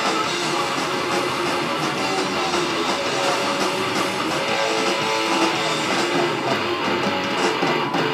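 Live thrash metal band playing an instrumental passage without vocals: loud distorted electric guitars driving a riff over bass and drums.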